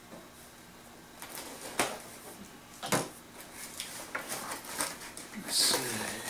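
A cardboard shipping box being slit open with a small blade and its flaps pulled back: a few sharp clicks and scrapes, then crackling cardboard and paper rustling near the end.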